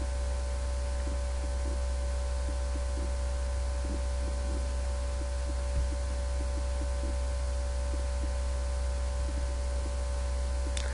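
Steady electrical hum: a strong low drone with several faint steady higher tones and hiss above it, unchanging throughout. There is a soft low thump about six seconds in.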